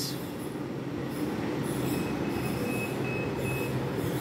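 Small 9-volt DC submersible water pump running steadily with a low hum as it pumps hot water out to the dispenser outlet.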